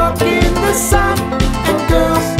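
Upbeat band music: acoustic guitar, banjo, bass guitar and drum kit playing a pop cover, with a steady drum beat of about two hits a second and a cymbal splash just under a second in.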